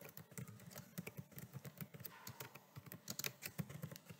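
Faint typing on a computer keyboard: a quick, steady run of keystrokes.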